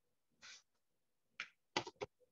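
Three short, sharp clicking noises within about a second and a half, the last the loudest.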